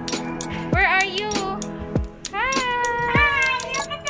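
Background music with a beat and a high melody that slides up and down, with one long held note in the middle.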